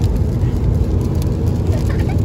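Steady low rumble of road and engine noise from inside a car driving along a motorway.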